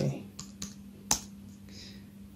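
Computer keyboard keys pressed a few times lightly, then one sharper keystroke just after a second in: a password being typed and Enter pressed to log in.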